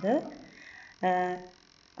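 A woman's voice: a word trailing off, then a steady drawn-out "eh" hesitation held for about half a second before a short pause.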